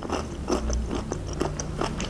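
A person chewing food with the mouth closed, close to the microphone: a string of short, irregular mouth clicks.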